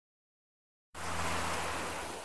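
Silence, then about a second in, hurricane rain and wind noise cuts in abruptly as a steady hiss with a faint low hum beneath it.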